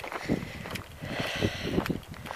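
Footsteps crunching on a gravel track, several steps roughly half a second apart.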